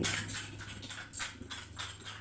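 Soft, irregular clicks and rustles, several a second, from close handling, over a faint low hum.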